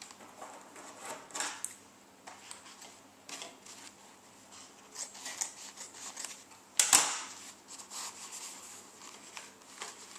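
Paper towel rustling as it is folded, cut with scissors and pressed into a clear plastic container: a run of short, soft rustles and snips, with one sharp, much louder snap about seven seconds in.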